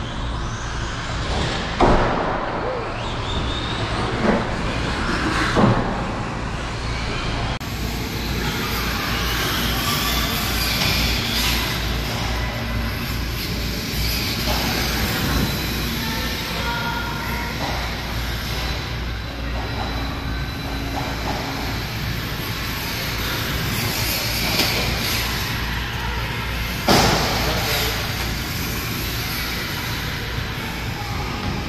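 Electric RC cars running on an indoor go-kart track, their motors and tyres heard over the hall's noise, with a few sharp loud knocks, three in the first six seconds and one near the end.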